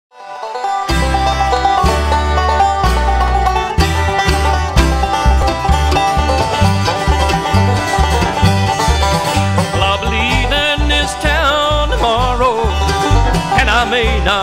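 Bluegrass band music, starting about a second in: banjo and guitar picking over a steadily pulsing bass.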